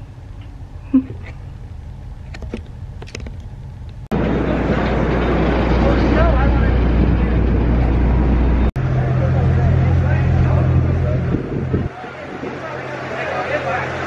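Water taxi's engine droning with wind and water noise under indistinct voices of other passengers. It starts abruptly about four seconds in, after a short stretch of quiet room tone with a few light clicks.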